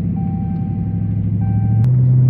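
The 6.4-litre HEMI V8 of a Dodge Charger 392 Scat Pack running at low revs, heard from inside the cabin as a steady low drone. Near the end the sound jumps abruptly to a slightly higher, steadier drone.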